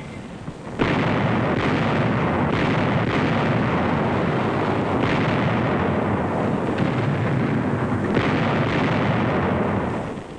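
Artillery barrage: heavy, continuous gunfire and shell bursts that start suddenly about a second in, with separate sharper reports standing out every few seconds.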